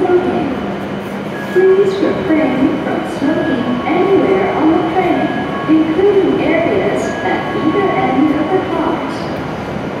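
A public-address voice speaking on a station platform, over a steady hum from a stopped E7 series Shinkansen train.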